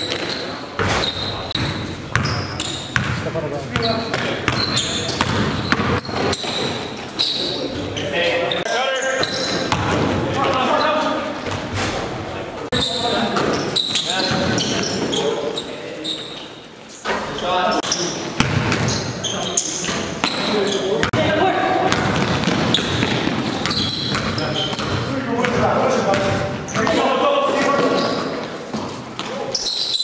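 Basketball game in a gym: the ball bouncing on the court floor again and again, mixed with indistinct shouts and calls from players, all echoing in the hall.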